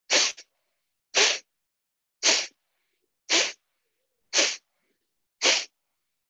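Kapalabhati breathing: six sharp, forceful exhalations through the nose, about one a second, with silence between.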